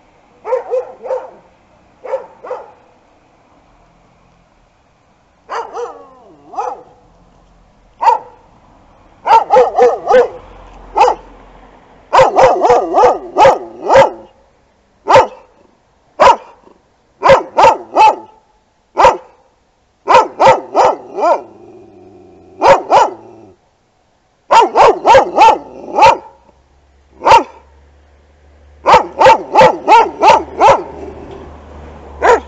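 Dogs barking at passers-by from behind a fence, territorial barking at people walking down the street. A few single barks come first; from about nine seconds in they bark in quick runs of three to six, with short pauses between.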